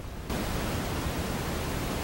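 A steady, even hiss that starts abruptly just after the start and then holds level.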